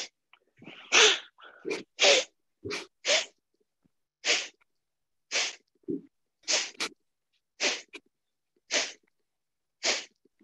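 Kapalabhati breathing: short, sharp, forceful exhalations through the nose, about one a second, each a brief hiss with silence between.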